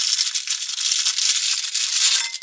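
Plastic wrapper of an Oreo biscuit packet crinkling and crackling as it is torn open by hand.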